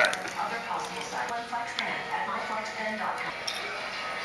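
Quiet voices talking in the background, with a few light clicks.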